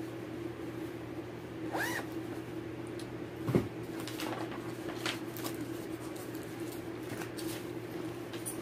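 Handling of a zippered clear project bag: rustling, short clicks and a zipper being worked, with a soft thump about three and a half seconds in. A steady low hum runs underneath.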